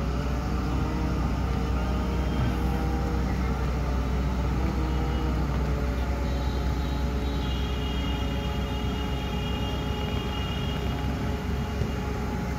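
Heavy construction machinery running steadily: the diesel engines of a crane and a tracked excavator making a constant low drone. A faint high whine joins from about halfway through.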